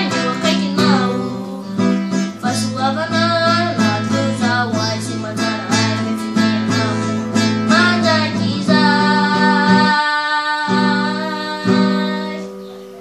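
Acoustic guitar played solo, plucked notes over a steady bass line. It settles into long held chords for the last few seconds, with one final chord struck near the end.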